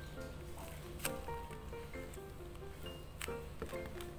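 Soft background music with a light melody of short notes. Two brief crinkly clicks, about a second in and again past three seconds, come from taped paper squishies being handled.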